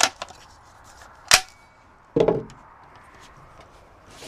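Rifle handling at the bench: a short click at the start, a single sharp, loud metallic snap about a second in, and a duller knock about a second after that.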